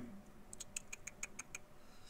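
A quick run of about eight to ten light clicks from a computer mouse, faint and closely spaced over about a second. This is the dropdown being worked to pick an option.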